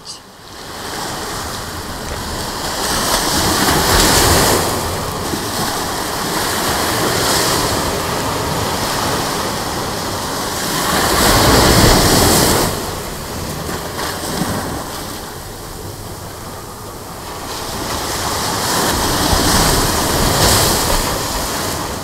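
Ocean surf breaking on a sandy beach: a steady rushing wash that swells and fades with the waves about every eight seconds, loudest around eleven to twelve seconds in.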